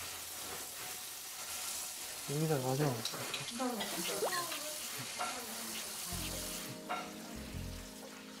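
Kitchen tap running into a sink during dishwashing, a steady hiss with a few quiet voices over it; low background music comes in about six seconds in.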